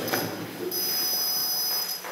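A steady high-pitched electronic whine made of several level tones, starting under a second in and holding at an even loudness.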